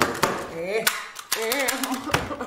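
A desk stapler banged down again and again by hand, a series of sharp clacks, some in quick succession, with strained grunts between them. The stapler has run out of staples.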